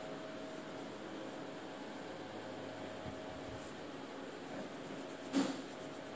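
Quiet room tone: a steady low hiss with a faint hum, and one short soft noise about five seconds in.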